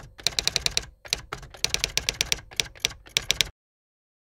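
Typewriter sound effect: quick runs of key clacks in several bursts, cutting off suddenly near the end.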